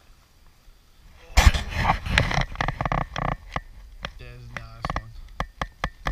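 A largemouth bass splashing and thrashing in shallow pond water as it is grabbed by hand and lifted out, a sudden loud burst about a second and a half in that lasts about two seconds. It is followed by scattered sharp clicks and a short held voice sound.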